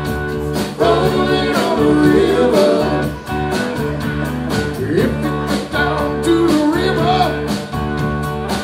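A live rock trio playing: electric guitar, bass guitar and a drum kit keeping a steady beat, with a male voice singing over the band.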